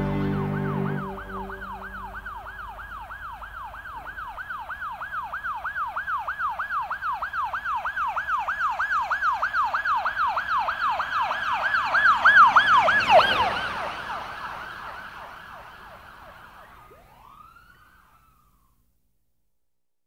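The music stops about a second in, and a yelping siren takes over, its pitch sweeping up and down about three or four times a second. It grows louder, drops in pitch as it passes its loudest point about two-thirds of the way through, and fades away, as an emergency vehicle does when it passes and recedes.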